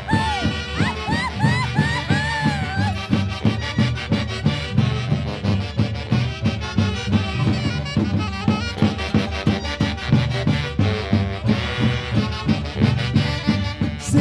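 Live Huancayo orquesta playing a Santiago dance tune: saxophones carry the melody over a steady drum beat.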